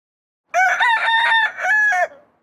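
A rooster crowing once, starting about half a second in: a short rising opening, a long held note, and a last note that falls away at the end.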